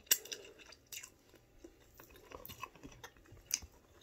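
Close mouth sounds of someone eating seafood: chewing, wet lip smacks and finger-sucking. A few sharp smacks stand out, the clearest right at the start and about three and a half seconds in.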